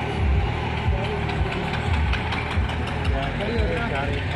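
Tractor engine running with a low, uneven throb, with people's voices in the background.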